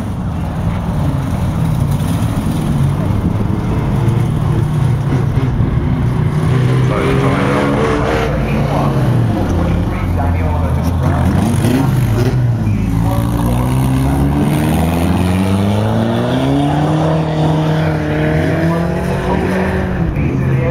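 Banger racing cars' engines running as they drive around the oval track, their pitch rising and falling as they accelerate and ease off, with a long climb in revs in the second half.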